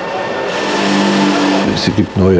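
Engine noise growing steadily louder, a rising hiss over a steady low hum, cut off abruptly near the end.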